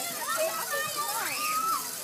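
Several children's voices chattering and calling out over one another, the high-pitched sound of children at play.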